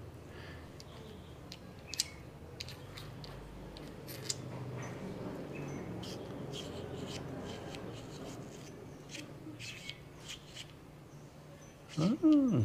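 Small clicks and light handling noises from a Ulanzi U60 ball-head camera mount being turned and adjusted in the hands, over a steady low hum.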